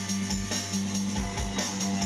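A rock band playing live: electric guitars through amplifiers over drums keeping a steady beat.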